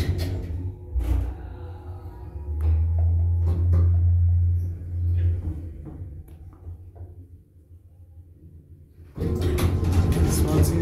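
Traction elevator (1992 Atlas Omega II) closing its doors with clunks in the first two seconds, then its DC drive starting with a steady low hum as the car travels down one floor. The hum fades out as the car slows and stops, about seven seconds in.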